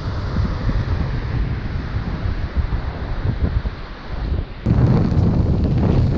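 Wind buffeting the microphone over the sound of surf, turning suddenly louder about five seconds in.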